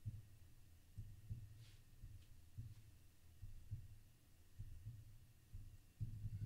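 Near silence, with faint low thuds at irregular spacing, roughly one a second, and a couple of faint clicks: keystrokes on a computer keyboard.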